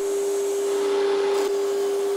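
An electric woodworking machine running at a steady speed: a constant motor hum with an even, airy hiss over it.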